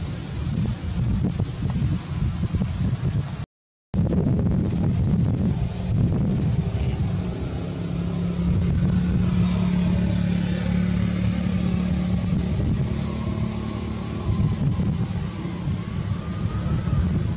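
Wind rumbling on the microphone outdoors, with a steady motor hum in the middle for a few seconds. The sound cuts out completely for a moment about three and a half seconds in.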